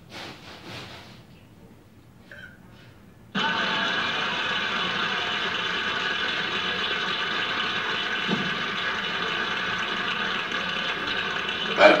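Television sound: a steady electronic buzzing hum that switches on suddenly about three seconds in and holds at an even level.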